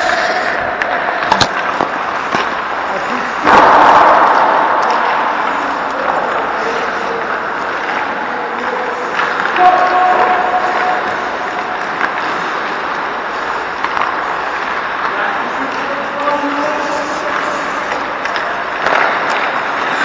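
Ice rink ambience: hockey skates carving and scraping across the ice in a steady wash of noise, with occasional stick and puck clicks and faint distant voices. A louder rush of scraping noise comes about four seconds in.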